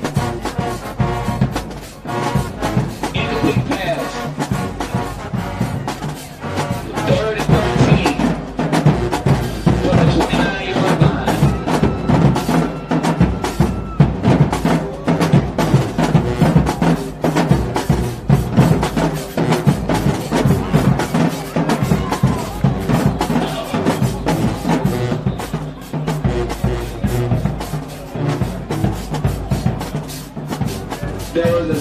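Band music with drums keeping a steady beat and brass horns playing over it.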